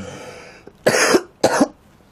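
A man coughing twice into his cupped hands, two short sharp coughs about half a second apart.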